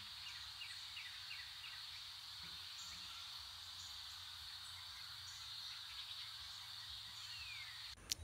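Quiet outdoor wildlife ambience: a steady high hiss of insects, with birds calling over it: a quick series of short chirps in the first second or so and a falling whistle near the end.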